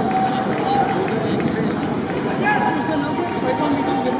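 A stadium crowd cheering and shouting, many voices at once, holding at a steady level.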